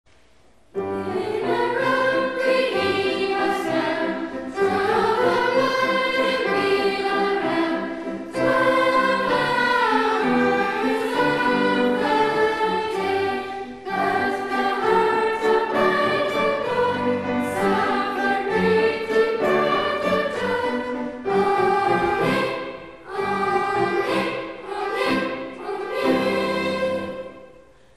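Children's choir singing a song in several phrases, starting about a second in, with short breaks between the phrases.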